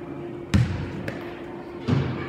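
Two thuds of a soccer ball struck hard, about a second and a half apart, each ringing on briefly in an echoing indoor hall.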